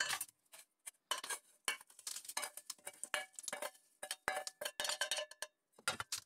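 Small copper granules and scraps rattling and clinking against a stainless steel bowl as they are stirred and tipped by hand. The bowl rings faintly under the many small hits.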